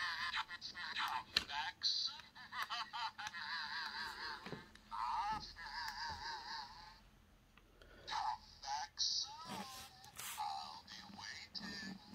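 Talking wooden Diesel 10 toy engine playing its recorded voice through its small built-in speaker after its button is pressed, thin and tinny with no low end. One long stretch of about seven seconds, then a short pause and a shorter second stretch.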